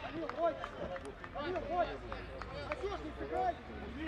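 Several voices shouting and calling out across an open football pitch, overlapping and not clearly worded: players and coaches calling during play.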